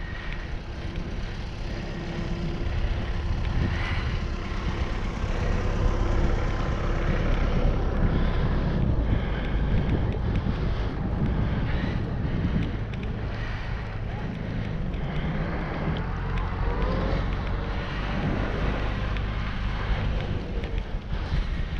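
Wind buffeting the microphone of a camera on a moving bicycle, a steady low rushing noise.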